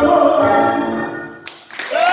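Recorded tango music with a sung vocal, its final phrase dying away about a second in, followed near the end by the sudden start of audience applause.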